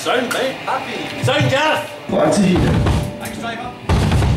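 Voices through a live-venue PA between songs. About halfway through, heavy low booming from the band's bass and drums comes in suddenly, and it comes again near the end.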